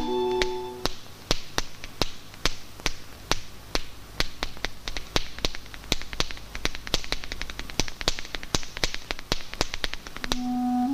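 Finger snaps from both hands, a quick uneven run of sharp clicks about four a second, starting about a second in as a held musical note dies away.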